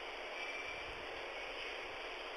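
Steady low hiss of a telephone line, with no speech.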